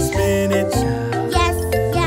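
Children's song: singing over a bouncy backing track with steady bass notes.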